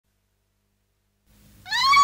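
Silence, then about a second and a half in a bowed fiddle enters with a single note that slides up in pitch and is held, opening a piece of traditional Amazigh music.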